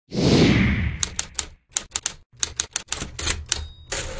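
A loud rushing hit, then typewriter keystroke sound effects: sharp clacks in quick groups of about three, with a bell-like ding near the end, as text is typed onto a title card.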